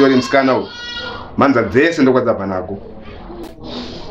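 A man talking, with a brief high-pitched bleat from an animal about a second in.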